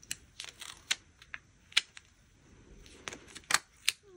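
Light, irregular clicks and ticks of paper stickers being handled and pressed down by fingertips on a planner page, with two sharper taps near the end.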